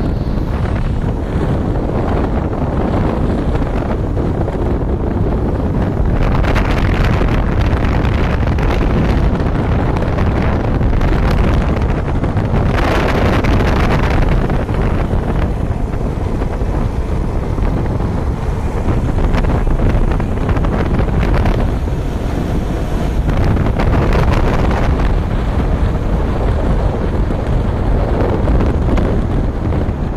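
Off-road buggy driving over rough ground: a steady, loud rumble of engine and ride noise under heavy wind buffeting on the microphone, with brighter surges every several seconds.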